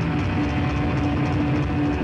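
Live hardcore punk band playing loud: a steady held note, most likely distorted electric guitar, over a dense low end of bass and drums, between vocal lines.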